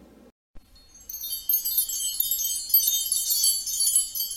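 Sparkle chime sound effect for a logo reveal: a dense, high tinkling shimmer of many small chime tones, starting about a second in and running on.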